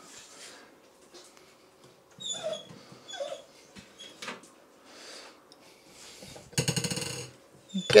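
Pet dogs making faint whines and snuffles, then a short, loud buzzing rattle about seven seconds in.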